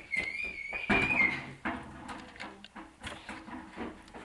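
A baby kitten mewing: one long, high, thin call that wavers slightly and lasts about a second and a half. A brief burst of handling or rustling noise, the loudest sound, comes about a second in, followed by faint scattered clicks.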